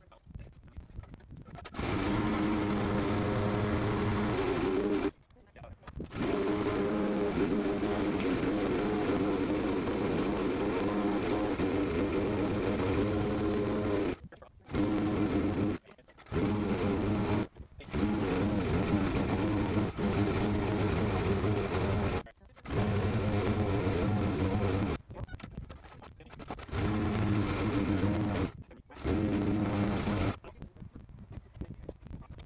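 Walk-behind lawn mower converted into a compost shredder, its small single-cylinder engine running steadily under load while shredding wet compost fed into the blade. The sound breaks off abruptly several times and resumes.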